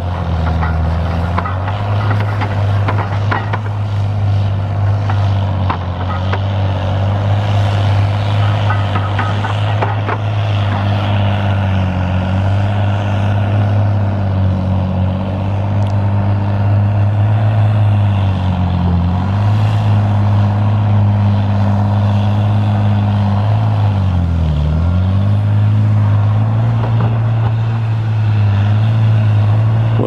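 Heavy diesel logging machine engine running steadily under load. Its pitch sags and recovers a few times as it lugs: near the start, about two-thirds of the way through, and most deeply a few seconds later.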